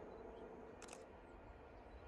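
Near silence: faint outdoor ambience with a faint steady hum, and one brief high click about a second in.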